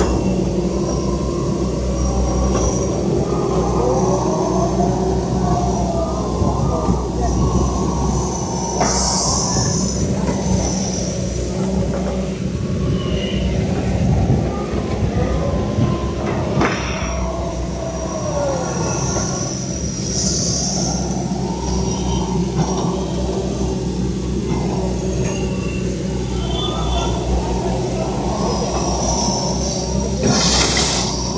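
Diesel engines of tracked Caterpillar excavators running steadily as they dig, with a whining tone that rises and falls twice. People's voices are heard over the machines.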